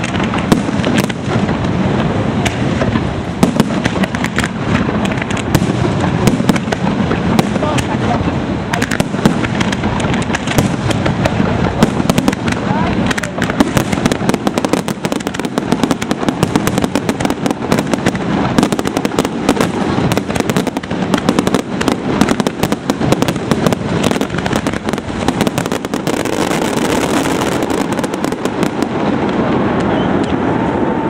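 Aerial fireworks display going off in a dense, unbroken barrage: many bangs and crackles a second, with a stretch of loud hiss near the end.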